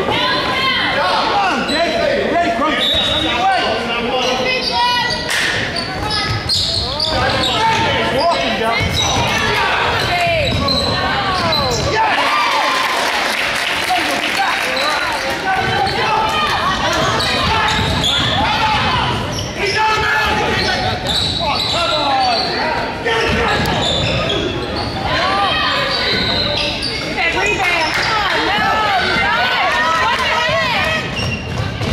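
A basketball dribbled on a hardwood gym floor, with players' and spectators' voices echoing around the large hall.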